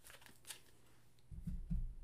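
A deck of tarot cards being handled on a cloth-covered table: a faint card click about half a second in, then soft low thumps near the end as the deck is picked up.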